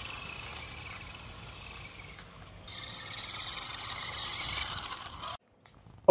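Pinecone SG1205 RC side-by-side driving on a dirt path in its slowest speed setting: a steady whine of its small electric motor and plastic drivetrain, with tyres scrubbing the ground. It cuts off suddenly near the end.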